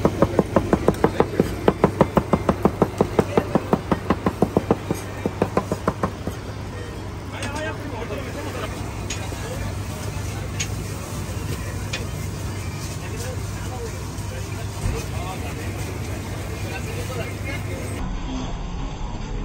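A cook's knife chopping meat on a cutting board in fast, even strokes, about five a second, stopping about six seconds in. A steady low engine hum runs underneath, with scattered faint clatter after the chopping stops.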